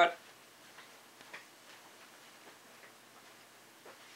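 Quiet room tone with a few faint, irregular clicks and taps spread through it, after the last spoken word cuts off at the very start.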